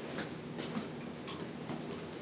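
Faint, irregularly spaced clicks from a CPR training mannequin being worked on during chest compressions.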